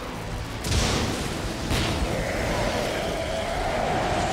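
Cartoon explosion sound effect: a boom with a rush of noise about 0.7 s in, a second burst about a second later, then a wavering hum, over background music.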